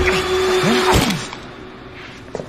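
Strained, choking groans from a man in a chokehold over a steady held music tone. Both cut off at a sharp crack about a second in, and it is quieter after.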